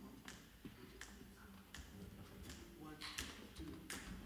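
Faint finger snaps at an even beat, about one every three-quarters of a second, counting in the tempo just before the band starts.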